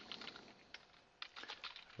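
Computer keyboard being typed on, faint: a few keystrokes near the start, a short pause, then a quick run of keystrokes in the second half.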